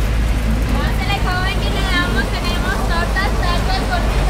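Car cabin while driving: a steady low road and engine rumble. From about a second in, a high-pitched voice is heard over it.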